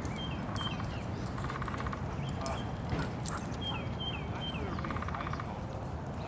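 Birds calling: a series of short falling chirps, with a quick rattling call about a second in and again about five seconds in, over a steady low rumble.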